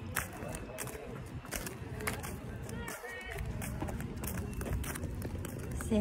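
Footsteps on asphalt, a quick run of short steps over a steady low outdoor rumble, with faint voices in the distance.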